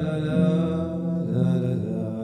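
A slow Hasidic niggun (devotional melody): a man's voice chanting into a microphone over sustained chords from a Roland electronic keyboard, with the melody moving to a new note about half a second in and again past the middle.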